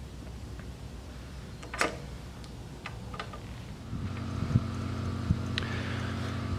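Steel die seated into the lower tool holder of a Mechammer MarkII planishing hammer with a sharp click and a few light ticks, then about four seconds in the hammer's electric motor starts and runs with a steady hum.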